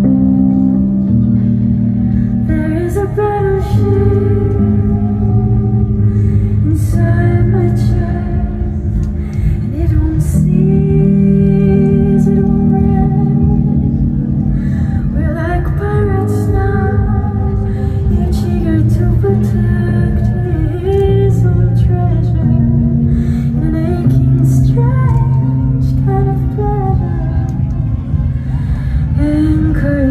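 A slow song performed live: a woman singing a gentle melody over sustained electronic keyboard chords that change every few seconds.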